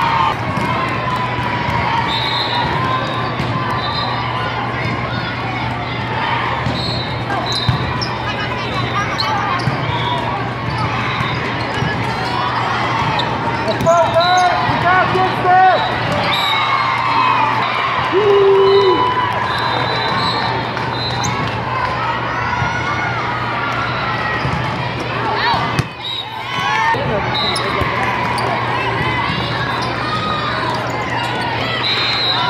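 Busy indoor volleyball-hall ambience: crowd and player chatter and calls, with volleyballs being struck and bouncing across several courts and a steady low hum under it all.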